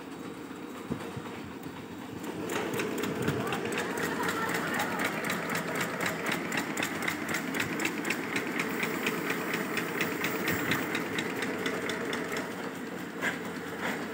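Automatic agarbatti (incense stick) making machine running, a fast, even mechanical clatter of several strokes a second that grows louder about two and a half seconds in.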